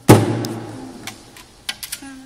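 A nylon-string classical guitar knocked hard, its strings ringing out and fading over about a second. A few light clicks and knocks of handling follow near the end.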